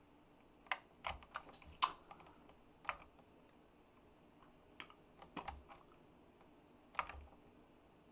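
Scattered single keystrokes on a computer keyboard: about ten separate taps, spaced unevenly with pauses of a second or more between some of them.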